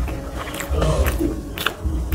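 Close-miked chewing of a mouthful of rice and fish curry, with wet mouth smacks; two sharp smacks near the end.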